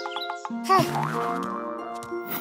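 A cartoon boing sound effect, a short springy wobble in pitch, less than a second in, over light children's background music that runs on with sustained notes.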